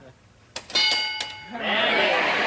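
The game-show answer board's reveal: a click, then a bright multi-tone bell ding ringing for under a second as a hidden survey answer is turned over. The crowd reacts with noise in the second half.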